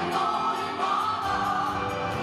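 A large choir of adult women's and men's voices singing a song together, amplified through microphones, with held notes and no pause.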